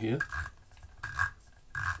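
The metal adjuster fitting on the bottom of a 1Zpresso JX aluminium hand coffee grinder being unscrewed by hand: three short rasping scrapes from the turning fitting.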